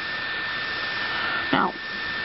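Steady hiss-like noise with a constant high-pitched whine running under it, unchanging throughout.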